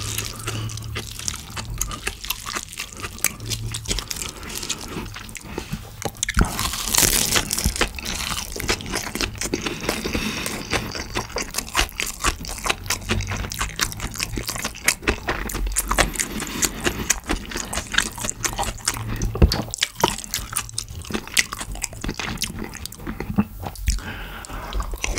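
Close-miked chewing of a mouthful of yeolmu bibimbap (rice mixed with young radish kimchi, bean sprouts and cabbage), with many small wet crunches and mouth clicks. A spoon scrapes in the bowl at the start.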